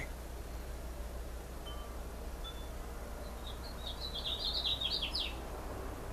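A songbird singing faintly in the background: two short single high notes, then a quick run of chirping notes about three and a half seconds in, over a steady low hum.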